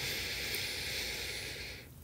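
A woman's long audible exhale, a steady breathy hiss that tapers off over about two seconds, taken as a guided out-breath.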